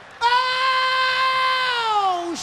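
A man's voice holding one long, high sung note into a handheld microphone. The note slides down in pitch near the end.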